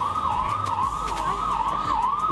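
A siren yelping, its pitch sweeping up and dropping back a little over twice a second at a steady level.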